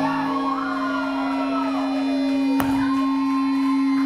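Electric guitar feedback and a held amplified drone ringing out at the end of a live rock song, with higher squealing tones that slide down in pitch over it. A sharp click comes about two and a half seconds in.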